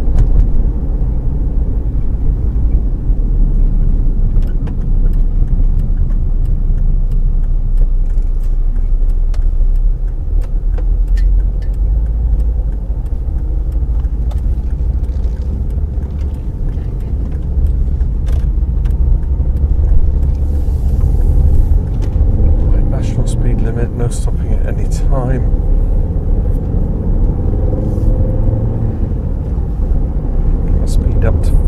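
Steady road and engine rumble inside a moving car's cabin. Around two-thirds of the way through comes a cluster of sharp clicks and short squeaks.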